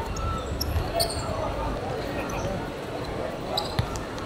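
A football being kicked and bouncing on a hard outdoor court: a few sharp thuds, one about a second in and another near the end.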